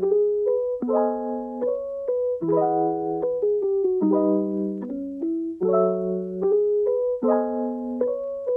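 Background music: a gentle keyboard tune, piano-like chords and melody notes struck in a steady pulse a little more than once a second.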